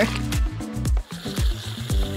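Background music with steady held notes over a repeating bass line, briefly dropping out about a second in.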